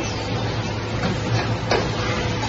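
2D CNC wire bending machine running: a steady hum with a constant tone over it, and a few short clicks and knocks from the moving bending head, the sharpest about three-quarters of the way in.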